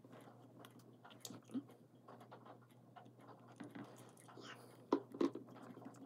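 Faint, scattered small clicks and ticks of hard plastic parts being handled and fitted together by hand, with a couple of slightly sharper clicks about five seconds in.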